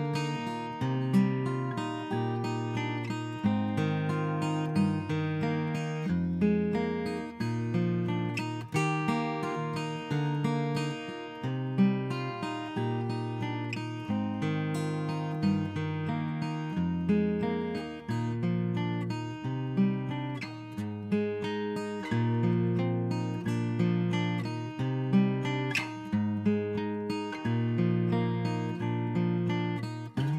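Solo steel-string acoustic guitar played in a steady, repeating picked pattern, the instrumental introduction before the singing comes in.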